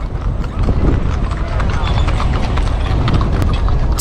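Horses' hooves clip-clopping on a paved road as a horse-drawn cart goes by: a quick, uneven run of clops over a steady low rumble.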